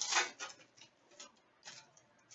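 Foil wrapper of a hockey card pack being torn open and handled, giving a few short, scattered crinkles and crackles.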